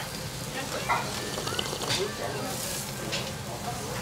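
Steady sizzling from a small tabletop hot-stone grill used to sear gyukatsu beef slices, under faint restaurant chatter.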